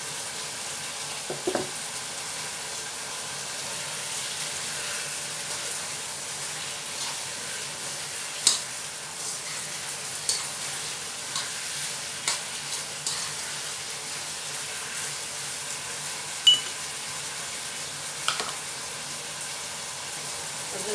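Chicken adobo pieces frying in a nonstick wok, a steady sizzle, with a few sharp clicks and knocks as the pieces are stirred against the pan.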